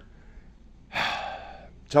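A man's audible breath about a second in, sharp at the start and fading over about half a second, in a pause between spoken phrases; his speech starts again at the very end.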